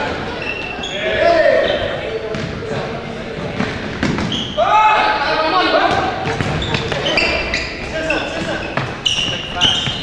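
Futsal match in a gymnasium: players shouting to each other over the thuds of the ball being kicked and bouncing on the wooden floor, all echoing in the hall.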